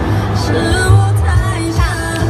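Pop music with a heavy bass beat and a synth melody line, in a section without singing.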